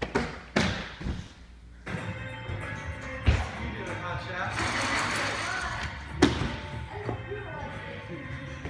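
A freerunner's hands and feet thud on plywood vault boxes and gym mats three times in the first two seconds. After that, background music with singing comes in, with two more sharp thumps, one about a third of the way in and one about three-quarters of the way.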